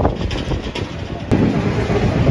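Wind buffeting the camera microphone, a low rumbling noise that changes abruptly to louder outdoor noise about a second in.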